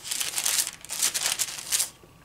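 Pages of a book, likely a Bible, being leafed through, rustling and crinkling in several quick bursts as someone hunts for a passage.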